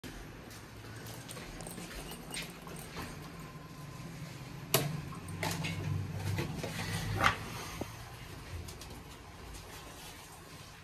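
Schindler hydraulic elevator cab: a sharp click about five seconds in, then a low hum with small squeaks and knocks for a couple of seconds, ending in a thump, typical of the car doors closing after a floor is selected.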